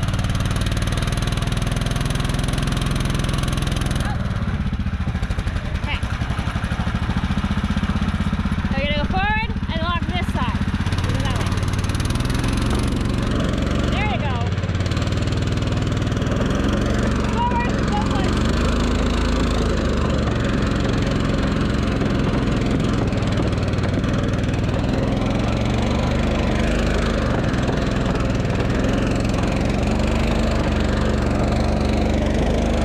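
Argo amphibious ATV engine running steadily under load as the vehicle works slowly along a rough trail. A few brief squeaks rise and fall about nine to ten seconds in.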